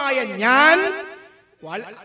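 Speech only: a man's voice drawing out one long vowel whose pitch dips and then rises. The vowel fades out about a second and a half in, and a short burst of speech follows.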